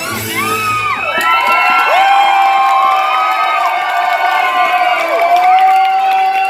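Audience cheering and whooping, with long, high, sliding screams, as the song's music cuts out about a second in.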